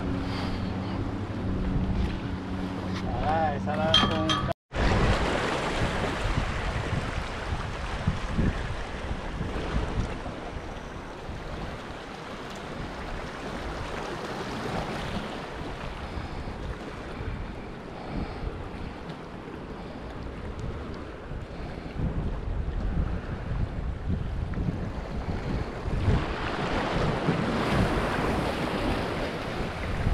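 Small waves washing against the rocks at the water's edge, with wind buffeting the microphone; the surf gets louder near the end. A steady low hum runs through the first few seconds and stops at an abrupt cut.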